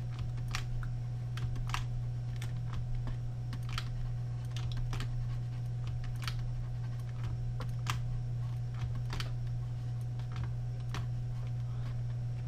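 Irregular clicking of a computer mouse and keyboard, as with Alt-clicks and clicks of the clone stamp tool in Photoshop, over a steady low hum.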